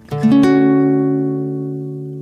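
A plucked guitar chord, its notes sounding one after another in quick succession just after the start, then left to ring and fading slowly.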